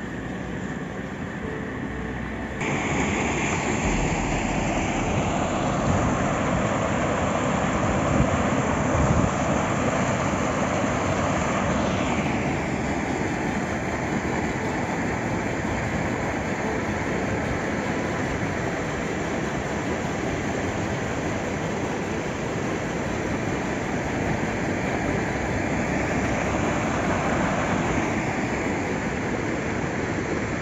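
Muddy floodwater from a flash flood rushing along a street, a steady loud rush of noise that jumps up in level about two and a half seconds in.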